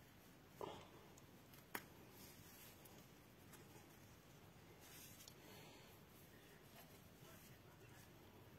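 Near silence: quiet room tone with faint handling noise as a ribbon is threaded through cardstock fan blades. There is a short soft sound just over half a second in and a light click near two seconds.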